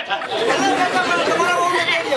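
Several men's voices talking over one another, speech only.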